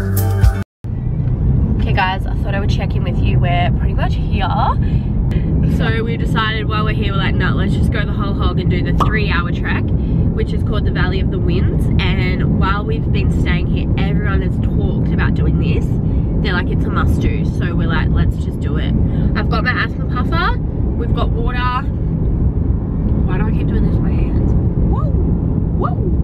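Steady road and engine noise inside a moving car's cabin, under a woman talking. Music is heard briefly at the start before a cut.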